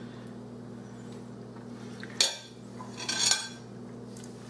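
A metal spoon clinking against a glass mixing bowl about two seconds in, then a longer scraping clatter about a second later as the spoon is set down in the bowl.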